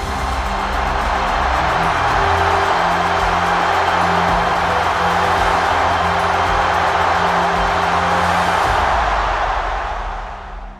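Soundtrack music with long held low notes over the loud, steady roar of a stadium crowd cheering. Both fade out near the end.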